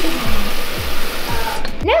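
Kitchen tap running a steady stream of water into a glass, a loud even hiss that stops about a second and a half in.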